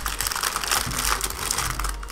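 Thin clear plastic bag crinkling continuously as it is handled and moved across a desk.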